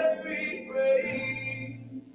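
A man singing the closing phrase of a gospel praise song over an electric keyboard, the singing fading out near the end while the keyboard holds a low sustained note.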